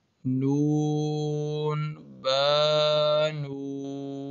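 A man's voice chanting Arabic letter names in long, drawn-out held tones, the slow recitation style of a Qur'an reading drill. There are two long held syllables, the second louder, then a softer one running on at the end.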